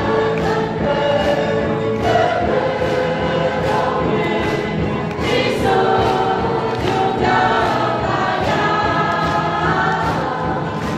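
Worship singers singing a gospel song together with band accompaniment, several voices holding long notes over a steady beat.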